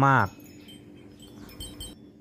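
Faint high-pitched chiming, a few thin ringing tones with small tinkling clicks toward the end, which cuts off abruptly.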